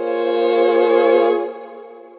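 8Dio Studio Solo Violin sample library playing a con sordino crescendo arc: a muted bowed violin chord of several held notes with vibrato, swelling up and then falling away about one and a half seconds in.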